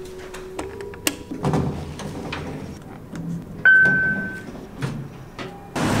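A run of sharp clicks and knocks with a short low hum near the start, then one clear electronic beep, under a second long, about halfway through.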